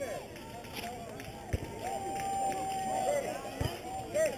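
Many overlapping voices of onlookers and players chattering and calling at a youth ball game, with one long held call in the middle and two short dull thumps.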